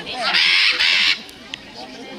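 A military macaw gives one loud, harsh squawk about a second long near the start.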